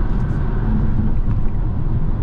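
Road and tire noise inside the cabin of a 2023 Dodge Hornet GT at highway speed, a steady low rumble. The tires are loud at this speed.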